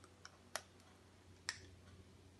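A few faint, sharp clicks of fingers handling a tiny elastic horse band and gathered ribbon, fitting the band over the ribbon to make a dog bow.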